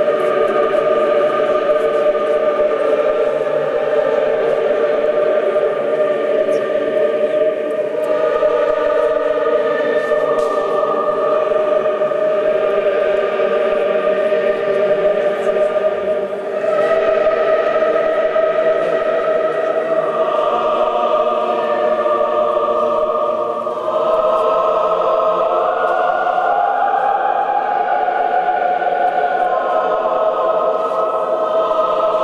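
Church choir singing Orthodox liturgical chant unaccompanied, in long held phrases with short breaks about 8, 16 and 24 seconds in; the melody climbs near the end.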